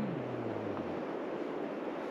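A low hummed "mm" from a person trails off about a second in, leaving a steady rush of wind noise.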